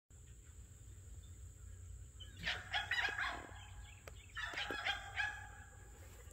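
A bird calling twice, each call about a second long and pitched, with a pause of about a second between them.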